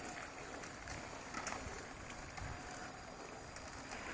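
Faint, steady rolling noise of a mountain bike ridden along a forest track: tyres on the leaf-strewn ground, with a few light knocks.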